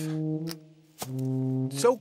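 Cartoon background music: two held low brass-like notes, the second a little lower and starting with a sharp click about a second in.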